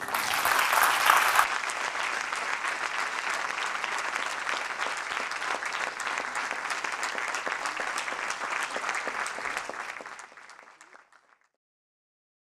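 Audience applauding at the end of a talk, strongest in the first second or so, then steady, fading out about ten seconds in.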